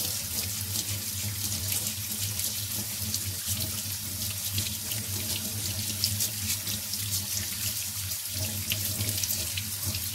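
Kitchen tap running steadily into a stainless steel sink, the stream splashing over a potato as it is scrubbed with a bristle vegetable brush, with fine crackling splashes throughout. A steady low hum runs underneath.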